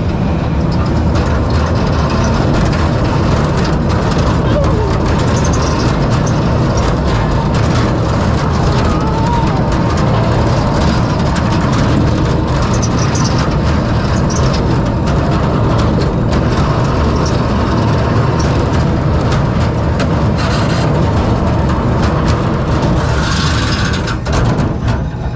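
Kiddie roller coaster train running on its steel track: a loud, steady rumble and rattle of the wheels, with a brighter hiss just before it pulls into the station.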